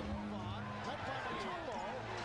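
Basketball arena crowd noise during live play, with a ball bouncing on the hardwood court, over a steady low hum.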